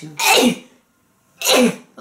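A woman sneezing twice, the sneezes a little over a second apart, each a sharp burst that falls away quickly.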